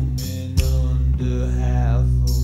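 Slow, heavy rock music: low notes from guitar and bass held steadily, with two sharp drum hits and a drawn-out, chant-like vocal line that bends in pitch near the end.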